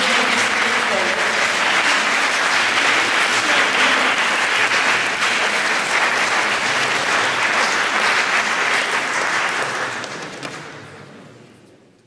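Audience applauding steadily, fading away over the last two seconds.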